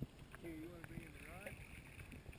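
Low, muffled water rumble and sloshing picked up by a GoPro held underwater in its waterproof housing. A faint, muffled voice wavers for about a second in the middle.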